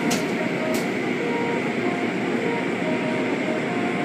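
Automatic car wash heard from inside the car: a steady rush of water spray and spinning cloth brush strips against the body and windows, with two sharp knocks in the first second.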